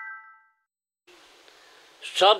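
A single bell-like metallic ding, rung just before and fading out within about half a second. Then a short stretch of dead silence, then faint room noise.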